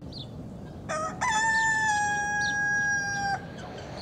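A rooster crowing once: a short opening note, then one long held note of about two seconds that falls slightly in pitch and cuts off. Faint short calls from other chickens sound around it.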